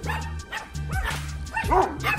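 Dogs barking at another dog across a fence, typical of territorial fence-line barking, with a few short barks and the loudest cluster near the end. Background music with a steady bass line plays under them.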